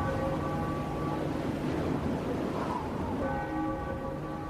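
A bell tolling: a stroke rings on and fades over the first second, and the next stroke sounds about three seconds in.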